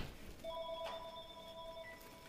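A faint, steady ringing tone made of several pitches at once, starting about half a second in and holding for about a second and a half.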